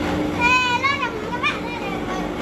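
A young child's high-pitched voice calling out, about half a second in and again near the middle, over a steady low hum.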